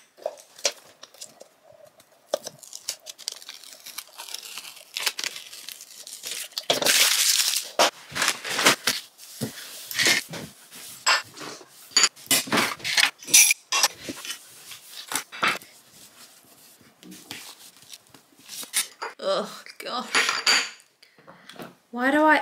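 Small hard objects clinking and knocking as they are put down and moved about on a stone desktop, with a tissue rustling as it wipes.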